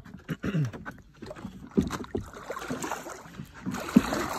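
Paddle strokes in pond water: the blade splashing and swishing, with irregular knocks of the paddle and boat, and a sharp knock near the end.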